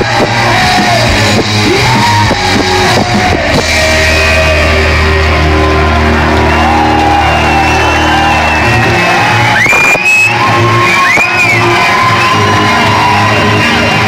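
Live rock band playing loud in a hall, recorded from the crowd. A low chord is held for several seconds and then breaks off, with shouted voices and high sliding squeals over the music about ten seconds in.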